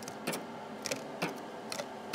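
Metal tongs clicking as cubes of pork belly are lifted off a wire rack and dropped into a foil tray: a few light, separate clicks over about two seconds.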